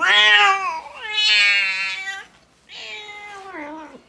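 A cat meowing three times in long, drawn-out calls. The first is loud and falls in pitch, the second is the longest and holds steady, and the third is quieter and drops at the end.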